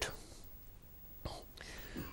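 A pause in a newsreader's speech: low studio room tone with a faint breath a little over a second in.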